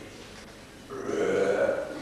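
A man burping once, a long drawn-out burp that starts about a second in and lasts about a second.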